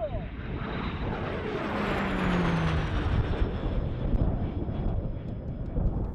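Single-engine turboprop racing plane flying past in a steep climb: a loud rush of propeller and engine noise, with a high turbine whine that falls in pitch as it goes by.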